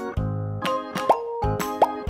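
Bouncy background music with a steady beat, with two short rising cartoon plop sound effects, about a second in and again near the end.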